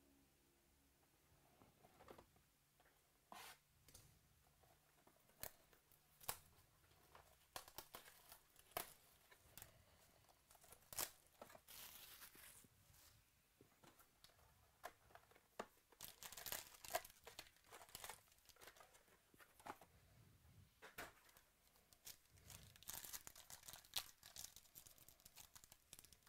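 Wrapping on a trading-card box being torn and crinkled in quiet, irregular crackles and short tears, ending with a foil card pack being torn open.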